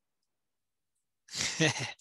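Near silence, then about a second and a half in a man's short, breathy laugh.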